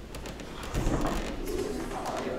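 Low, indistinct murmur of several voices as people greet one another, with light clicks and rustling.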